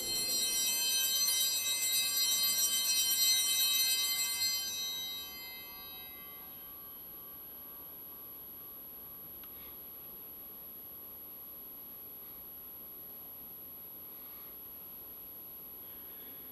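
Altar bell rung at the elevation of the consecrated host: one chime that rings on and dies away over about five seconds, leaving faint room tone.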